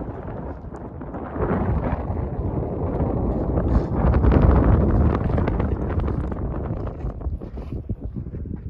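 Wind buffeting the microphone in gusts: a rough, low rumbling noise that swells to its loudest about halfway through and eases off toward the end.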